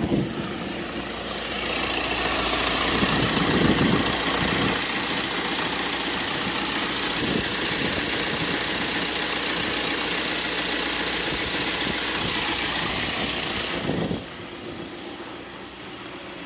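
Ford Transit 2.2-litre four-cylinder turbo diesel engine idling steadily, heard close up. The sound drops sharply about fourteen seconds in.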